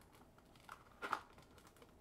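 A deck of plastic-sleeved trading cards sliding into a cardboard deck box: faint rustling of sleeves against cardboard, with one short scrape about a second in.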